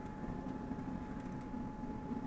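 Faint steady mechanical hum with a thin constant tone from a Pepper humanoid robot as it quietly moves its head up from looking down.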